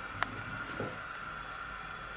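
Quiet indoor room tone with a faint steady high-pitched hum, broken by a single sharp click about a quarter of a second in and a faint soft knock a little later.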